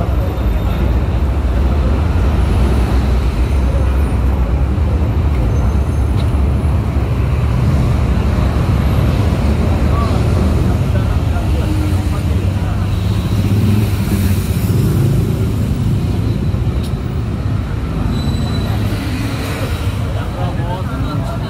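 Steady traffic noise of a busy city road: a continuous rumble of passing motor vehicles.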